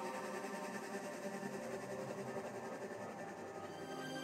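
Beatless breakdown in a melodic house DJ mix: sustained synth pads and held tones with no kick drum. A new chord comes in near the end as the music starts to build.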